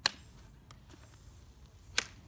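Two sharp clicks about two seconds apart, with a fainter one between, as the aluminium poles of a lightweight folding camp chair's frame are seated into the hub during assembly.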